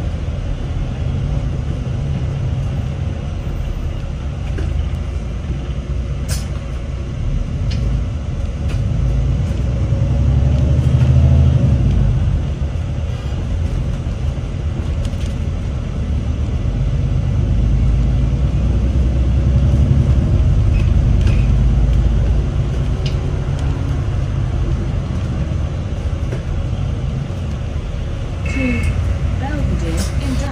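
Bus engine and running gear heard from inside the passenger saloon while the bus is driving: a steady low rumble that swells louder twice, around ten seconds in and again from about sixteen to twenty-two seconds in, with a few faint rattles and clicks.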